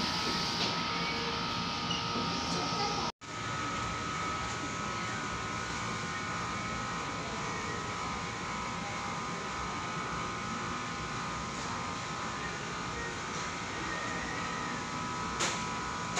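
Steady background hum with a few constant whining tones. The sound cuts out completely for an instant about three seconds in.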